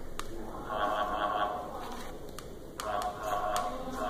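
Small hobby electric motors whirring in two short bursts as they drive a cardboard robot's arms, with a few sharp clicks in between.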